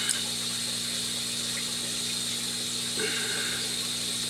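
Steady background hum made of several low tones under a constant hiss: room tone in a pause in speech.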